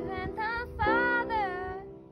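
Girl singing a slow song while accompanying herself on an electronic keyboard: her voice moves over a few held notes above sustained chords, and the singing stops near the end, leaving the chord to fade.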